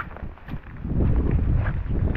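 Footsteps on wet ground, a few knocks early on, then a heavy low rumble of wind buffeting the microphone.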